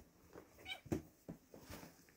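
A kitten gives one short, high mew a little before a second in, among soft knocks and rustling from kittens wrestling in a cushioned pet bed.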